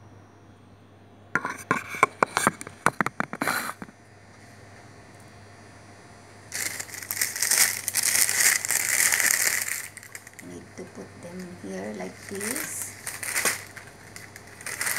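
A thin plastic bag crinkling as it is handled and opened: a rapid run of sharp crackles about a second in, then a longer stretch of loud crinkling from about the middle, with a few more crackles near the end.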